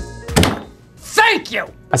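A single short thunk about half a second in, then a brief voice-like sound that falls in pitch, over faint background music.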